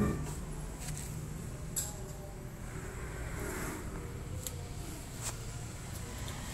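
A few sharp metallic clicks from a car's front brake disc and hub being handled, over a steady low background rumble. The loudest click comes right at the start.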